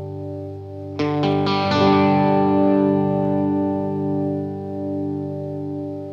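Rock band's instrumental passage led by electric guitar with chorus and distortion effects: a held chord rings steadily, and about a second in a few quick picked notes come in and ring out. No singing yet.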